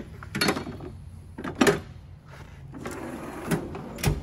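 Steel tool pieces knocking as they are set down in a Snap-on Master Series tool box drawer, the loudest knock a little past a second and a half in. Near the end the drawer rolls shut on its slides and stops with a thump.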